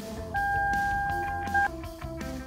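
Background music, with a single steady electronic beep over it that lasts about a second and a half and cuts off sharply.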